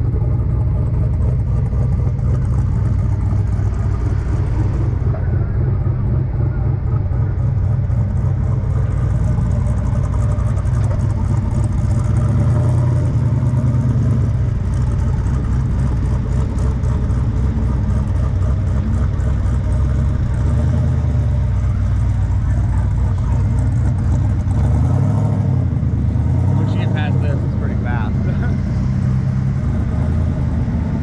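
Engine of a modified Jeep Wrangler running at low revs as it crawls over sandstone ledges, a steady low rumble that rises and falls a little. Voices come in near the end.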